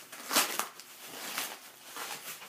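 White packaging wrap rustling as hands pull it open, in a few short bursts.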